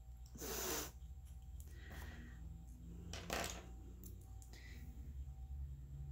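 Faint handling of a craft knife as its loose blade is refitted and the collet tightened: a few small clicks and one sharper tick a little past three seconds, with a short rush of noise about half a second in, over a low room hum.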